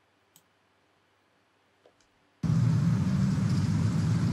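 Two faint clicks in near silence, then about two and a half seconds in the audio of the playing video clip starts abruptly: a steady low rumble under a noisy hiss, like street traffic.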